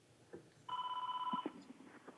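Electronic telephone tone: one steady beep lasting under a second, starting a little under a second in.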